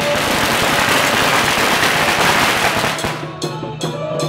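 A long string of firecrackers going off in a dense crackle for about three seconds. Near the end the procession's drum-and-cymbal beat comes back to the front.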